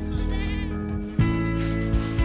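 Goat bleating once, a short, wavering, high call, over background music. About a second in, the music moves to a new, louder chord.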